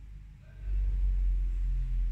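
A deep, steady low rumble that swells in about half a second in and holds.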